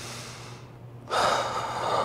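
A man's loud, sharp gasp of alarm, starting abruptly about a second in and lasting nearly a second.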